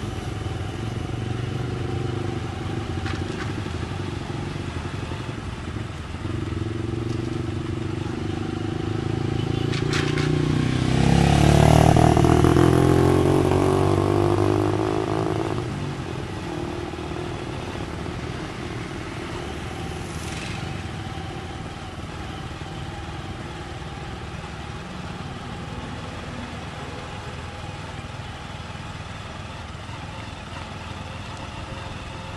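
Street traffic with vehicle engines running. One vehicle passes close and loud about halfway through, its engine pitch sweeping down as it goes by.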